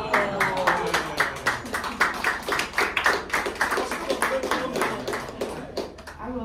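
Hands clapping in applause: a few people clapping in quick, irregular claps that ease off near the end.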